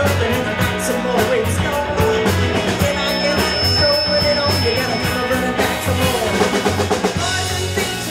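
Live rock band playing: a drum-kit beat with electric guitar and bass, the drum pattern changing about two-thirds of the way through.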